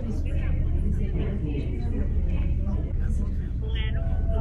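A steady low rumble with a few faint voices in a large room, one of them rising in pitch near the end.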